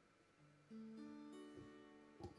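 Small acoustic guitar with no pickup, heard faintly through the vocal microphone. A single low note is played about half a second in, then a soft chord rings out and slowly fades, with a few more notes added partway through.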